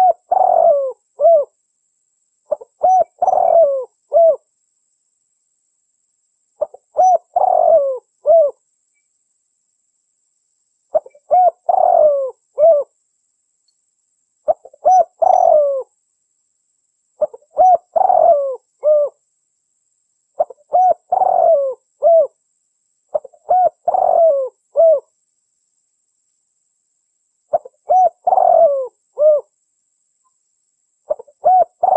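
Spotted dove cooing: a short phrase of several coo notes, ending in a brief clipped note, repeated about every three seconds with silence between phrases.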